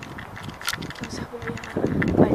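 A faint, indistinct voice with scattered light clicks.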